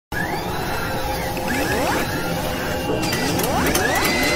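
Synthetic sound effects for an animated logo intro: rising whooshing sweeps, joined by a run of sharp mechanical clicks from about three seconds in.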